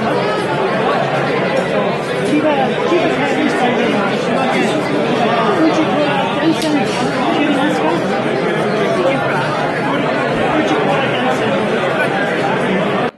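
Many people talking at once: steady, overlapping conversation chatter with no single voice standing out.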